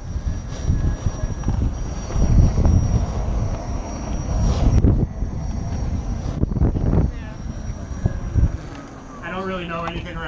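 Wind buffeting a low-mounted camera microphone while riding a Gotway ACM electric unicycle over concrete, a rough low rumble that eases off about eight and a half seconds in. Near the end a person's voice is heard.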